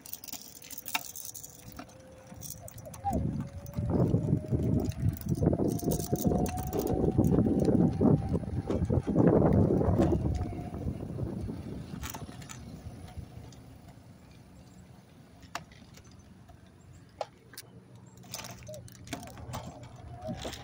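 A motor vehicle going by outdoors. A thin whine rises slowly in pitch over the first nine seconds, and a rumbling noise is loudest in the middle, then fades to a low hush.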